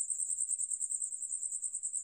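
A faint, steady, high-pitched trill that pulses evenly several times a second, like a cricket chirping.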